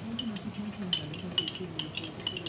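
A small glass seasoning jar shaken over a cooking pot, its contents rattling and the jar clicking in quick, irregular taps.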